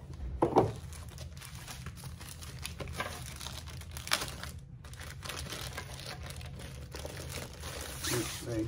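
Plastic packaging crinkling and rustling as a rolled diamond-painting canvas in its plastic sleeve is handled and pulled from its box, with a short louder sound about half a second in.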